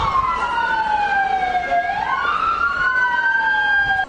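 Two emergency vehicle sirens wailing at once, each slowly gliding down and up in pitch so that the two tones cross each other.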